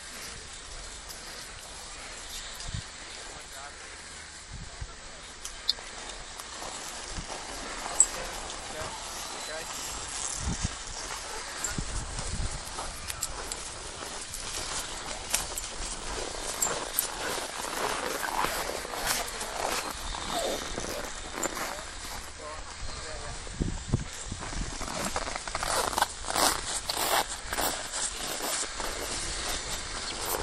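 Indistinct voices of people on a ski slope over a steady outdoor hiss, with crackling, rustling noise close to the microphone that grows busier and louder in the second half.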